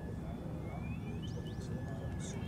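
Steady low outdoor background rumble, with a few short rising bird chirps in the second half.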